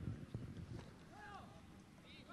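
Faint pitch-side sound of an amateur football match: a few soft knocks near the start, then distant shouted calls from players a little after a second in.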